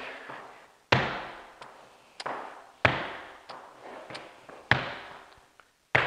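Flamenco shoes striking a hardwood floor in marking steps (marcaje), about three steps every two seconds with every third step louder, each strike ringing briefly in a hard-walled room.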